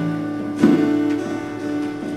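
Acoustic guitar strummed, a chord struck about half a second in and left ringing.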